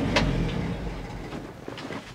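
Unmuffled engine of a 1966 International Harvester 1200A pickup running, then shut off about half a second in and dying away, with a sharp click just after the start.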